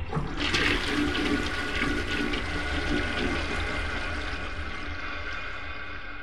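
A toilet flushing: a steady rush of water, strongest in the first few seconds, that slowly fades.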